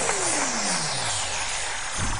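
Electronic dance track at its close: with the beat gone, a synth sweep glides steadily down in pitch into the bass over about a second and a half, over a falling wash of noise.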